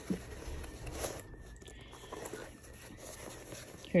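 Faint rustling and scuffing of a leather diaper backpack being handled as a zippered pouch is pulled out of its back compartment, a little louder in the first second.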